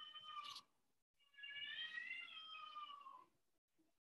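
Faint, high-pitched drawn-out animal calls: one fading out about half a second in, then a longer one of about two seconds that rises slightly and falls away.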